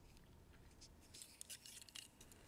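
Near silence, with a few faint clicks and scrapes in the second half from the blue plastic plow blade of a diecast Matchbox maintenance truck being handled between the fingers.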